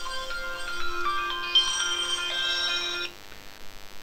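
A phone ringtone playing a short melodic tune of clear electronic tones. It stops about three seconds in when the call is answered.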